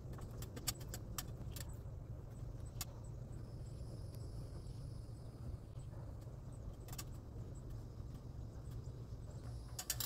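Scattered light clicks and clinks of handling as someone climbs an aluminium stepladder and holds a cardboard stencil to wooden siding, over a steady low rumble.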